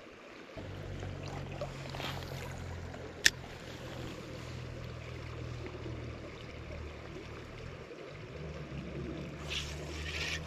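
Small creek flowing, under a steady low hum that drops out briefly about eight seconds in. One sharp click about three seconds in.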